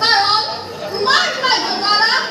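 Speech only: a high-pitched voice speaking in short phrases.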